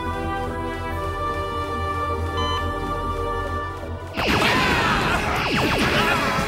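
Tense background music with long held notes; about four seconds in it cuts abruptly to a louder fight-scene passage of impact hits and sweeping, zapping sound effects over the music.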